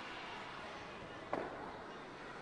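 Curling rink ambience: a steady hum and hiss of the arena, with one short, sharp sound a little past the middle.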